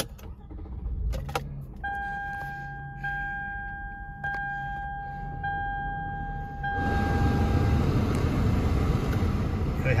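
Inside a 2008 Toyota Solara being started: a click, then a warning chime dinging about once a second for some five seconds. About seven seconds in, a steady, louder rush of air sets in as the climate-control fan comes on.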